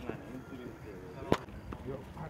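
Men's voices talking faintly, with a single sharp crack or snap just past the middle.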